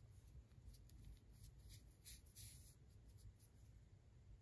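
Faint rustling and scratching of yarn drawn through crochet stitches with a yarn needle while weaving in an end, in short strokes mostly between about one and three seconds in, over a low room hum.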